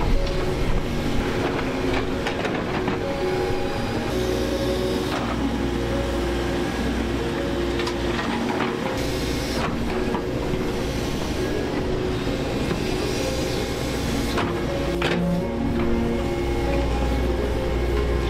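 Background music with a stepping melody laid over an excavator's diesel engine running, with its bucket knocking and scraping through stony soil while it digs out a riverbed trench.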